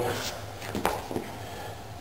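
Grapplers shifting their bodies on a training mat during a guard pass, with one sharp knock a little under a second in, over a steady low hum.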